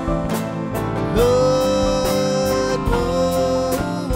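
Live worship song: a man sings over electric bass and band accompaniment, holding one long note and then a shorter one.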